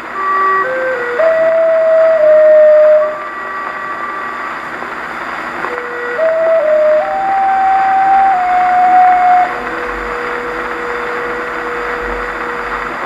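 A 1909 acoustic disc record played on an EMG Mark Xb horn gramophone with a bamboo needle. The orchestral accompaniment plays an instrumental passage of held notes between sung phrases, ending on one long held note, over steady surface hiss.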